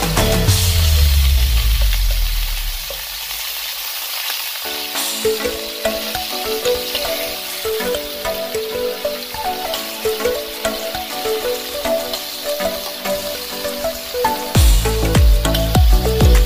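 Marinated beef slices sizzling as they fry in hot oil in a pan, heard under background music. The music's deep bass fades over the first few seconds, a melody comes back about five seconds in, and the bass returns near the end.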